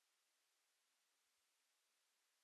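Near silence: only a faint steady hiss.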